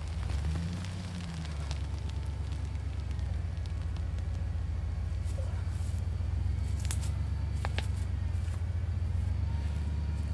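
A 4x4 vehicle's engine running steadily as a low rumble, growing a little louder, with two sharp clicks late on.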